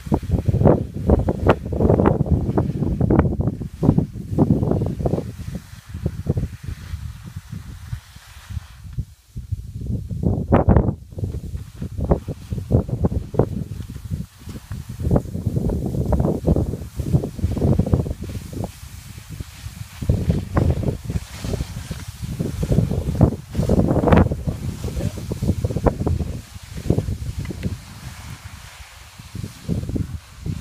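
Wind buffeting the microphone: a low, irregular noise that rises and falls in gusts, with a brief lull about nine seconds in.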